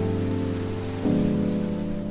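Background music: slow, held keyboard chords that change to a new chord about a second in, over a steady rain-like hiss.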